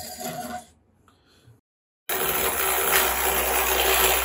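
Cuts to silence for about a second and a half, then a steady whirring hiss with a low hum: a Tedco toy gyroscope's brass rotor spinning fast on its pedestal stand.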